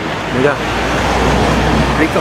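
A car passing on the street, its engine and tyre noise swelling to its loudest about a second and a half in, then fading.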